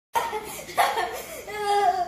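High-pitched laughter and voice.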